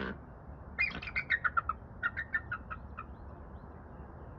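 Bald eagle calling: one call at the start, then two quick trains of about eight short, high piping notes, each train falling slightly in pitch, a little under a second apart.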